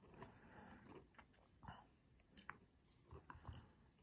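Near silence: room tone with a few faint, scattered small clicks and crackles.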